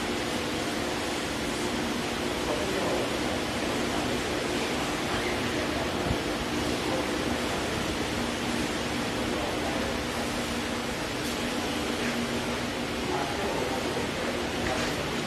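Tensile testing machine running a fabric pull test, its crosshead drive motor giving a steady hum of a few low tones over an even hiss.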